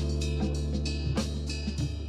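Music with drums over a steady bass line.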